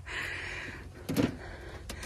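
Nissan X-Trail's hard boot floor board being lifted by hand: a soft scraping rustle, then a short sharp click near the end.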